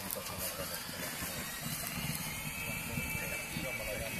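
Battery-driven Lely feeding robot moving over snow, with a faint steady electric whine coming in about halfway, under indistinct voices and outdoor background noise.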